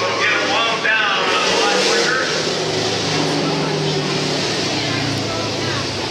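Dirt-track stock car engines running at a steady, low pitch, with a voice talking over them for the first two seconds.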